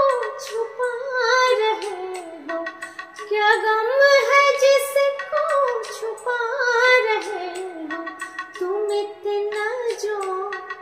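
A woman singing a flowing, ornamented melody in Raag Yaman, her voice gliding and bending between notes, with a couple of brief breaks.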